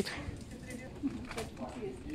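Faint rasps of packing tape being pulled off a roll to seal parcels, three short strokes, under quiet background voices.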